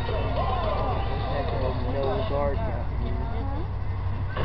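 Indistinct voices of people talking, with no clear words, over a steady low rumble.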